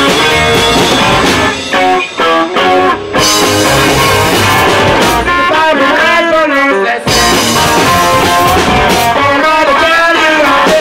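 Live psychobilly band playing loud: electric guitar, upright bass and drums. The music breaks up into short choppy stops about two seconds in, then the full band comes back in hard about seven seconds in.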